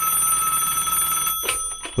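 Telephone bell ringing in one steady trill, cut off by a click about a second and a half in as the call is answered.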